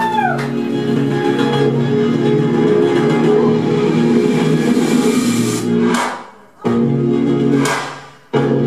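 Live rock band playing an instrumental song intro, with electric guitar: steady held chords. Twice in the last few seconds a sharp hit is followed by a brief stop before the music comes back in.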